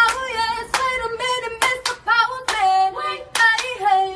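A high voice singing a melody, with several sharp hand claps scattered through it.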